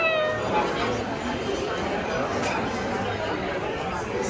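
Steady background chatter of a busy restaurant dining room, with a brief high-pitched, falling squeal of a voice right at the start.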